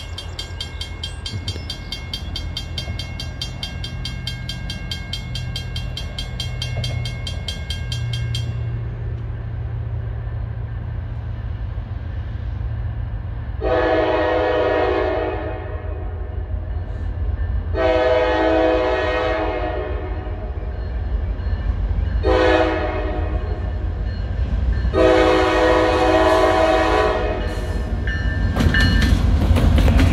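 A mechanical railroad crossing bell rings rapidly and stops about eight and a half seconds in. Then a diesel locomotive's K5LA air horn sounds the grade-crossing signal of long, long, short, long. The low rumble of the approaching diesel locomotives grows to its loudest as the lead unit reaches the crossing at the end.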